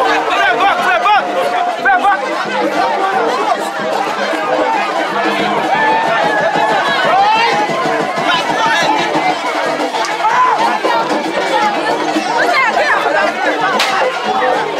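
Dense crowd chatter: many voices talking and calling out at once. A single sharp crack near the end.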